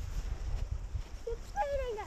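Sledge sliding over snow with a low rumble and wind on the microphone; near the end a high-pitched voice calls out once, falling in pitch.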